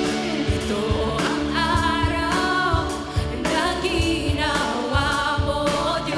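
Live praise-and-worship song: a woman leads the singing on a microphone with backing singers, over electric guitar and a steady beat.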